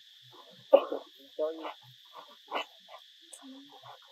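Steady, high buzzing of forest insects, with a few short vocal sounds spaced about a second apart.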